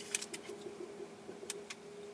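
Faint handling of a sheet of adhesive labels: a label is peeled off its backing and pressed onto a small candle tin, giving a few light clicks and paper rustles over a faint steady hum.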